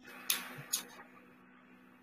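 Two brief clicks within the first second over a faint steady hum from an open voice-call line, fading to near silence.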